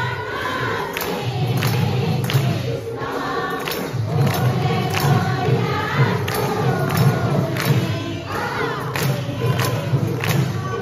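A large group of women singing an Assamese devotional naam together. They clap their hands on a steady beat, about one clap every three-quarters of a second.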